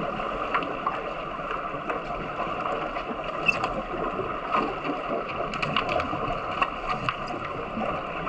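Underwater pool sound picked up by a submerged camera: a steady muffled rush of churning water with many small sharp clicks and knocks, more of them in the second half, as players in fins struggle around the goal basket.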